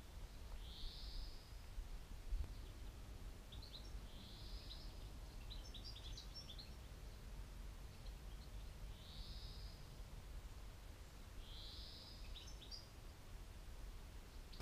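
Faint birdsong: a songbird repeats a short high phrase four times, a few seconds apart, each followed by several quick chirps, over a faint low outdoor rumble.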